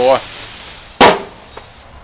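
Metal lid of a Char-Broil charcoal/gas grill being shut with one sharp clank about a second in, over searing skirt steak.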